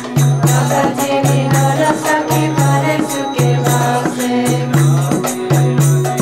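Devotional kirtan: voices chanting a devotional song to music, over a low repeating tone, with a steady percussive beat.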